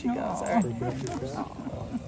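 Voices: a person laughing, with others talking softly.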